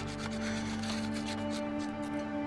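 Pocket knife whittling a small piece of wood: several short scraping strokes over held notes of soft background music.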